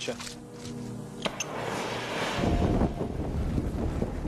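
Naphtha on a linen tunic igniting: a sharp click about a second in, then a sudden rush of flame that swells within a second into a steady, deep burning noise. It is an instant burst of flame from the fast-igniting fuel.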